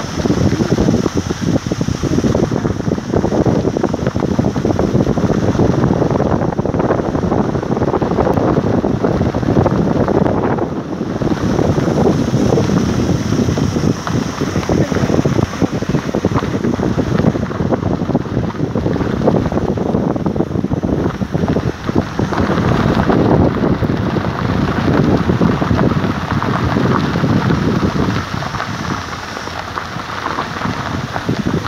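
Wind buffeting a phone's microphone from a moving vehicle: a loud, gusting rush that rises and falls without a break.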